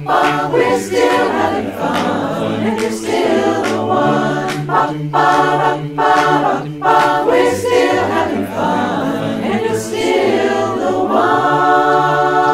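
Mixed-voice barbershop chorus singing a cappella in close harmony: short detached chords in a bouncy rhythm, then a held chord near the end.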